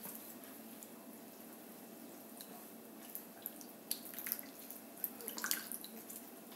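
Tahiti lime squeezed by hand over a bowl, its juice dripping in: faint, scattered drips and small squishes, mostly in the second half.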